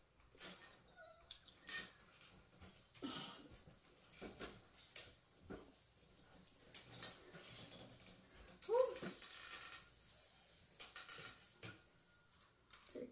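Faint handling noises: scattered clicks, taps and rustles as small items and packaging are handled, with one brief voiced sound about nine seconds in.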